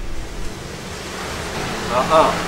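A steady rushing hiss of background noise, growing a little louder toward the end, with a man's voice starting right at the end.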